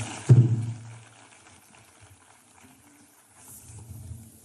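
A single dull thump about a third of a second in, fading within a second, followed by faint hall noise.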